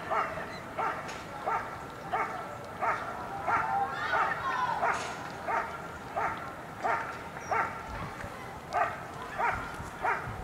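German Shepherd dog barking steadily and evenly, about one and a half barks a second, in the hold and bark at the hide of an IPO protection routine, keeping the helper in the blind at bay.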